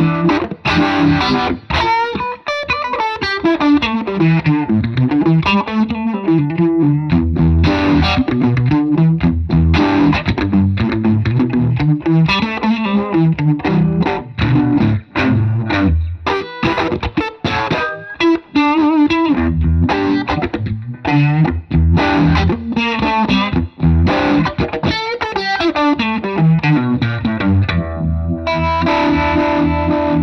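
Hand-built Strat-type electric guitar played through overdrive: a busy blues-rock lead with many bent and sliding notes, ringing out on held notes near the end.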